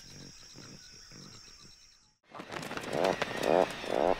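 Forest ambience with steady high insect trilling, cut off about two seconds in. Then Atlantic puffins calling at their colony, growing louder toward the end.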